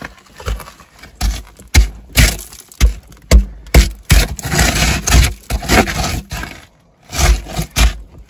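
Work boots stepping and scuffing on loose dirt and the broken top of a concrete foundation pier in a dug-out hole: an irregular run of scrapes with dull thumps.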